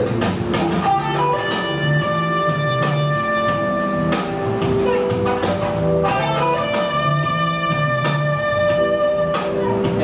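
Stratocaster-style electric guitar playing a slow melodic phrase, picked notes that are held and left ringing, changing pitch every second or two.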